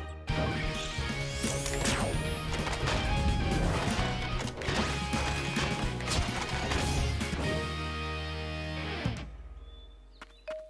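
Cartoon robot transformation sequence: mechanical clanks and crashing impacts over driving music, with a rising sweep about two seconds in. It cuts off about nine seconds in.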